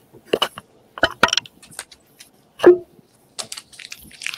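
Metal rings being handled, clicking against each other and against long fingernails: a handful of short, sharp clicks, the loudest nearly three seconds in.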